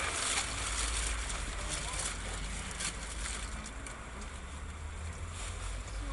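Cab noise of a moving minibus: a steady low engine and road rumble with faint rattles.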